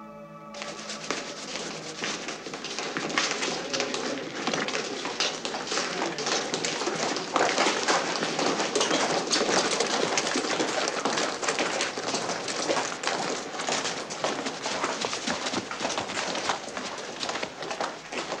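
Soft held music tones break off about half a second in. A dense bustle follows from a crowd of uniformed cadets on the move: many boots scuffing and clattering on stone and gravel, mixed with the knocks of handled kit.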